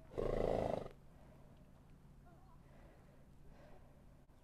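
A Silesian Noriker filly snorts once, a short blow through the nostrils under a second long near the start, while she sniffs at an unfamiliar horse trailer.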